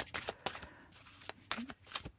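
A deck of Moonology Manifestation oracle cards being shuffled by hand: a few separate rustles and slaps of card against card. The cards are sticking and not sliding well, which makes it hard to draw one out.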